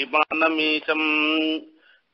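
A man chanting a Sanskrit verse in a slow, sung recitation, holding long steady notes that trail off near the end.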